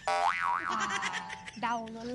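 A cartoon-style 'boing' comedy sound effect: a bright pitched tone that swoops up and down twice over about a second and a half, then gives way to a voice speaking near the end.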